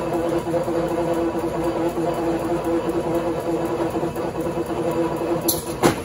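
Coil-winding machine running, its rotating form winding enamelled copper magnet wire into new motor coils with a steady whine. It stops with a sharp clack just before the end.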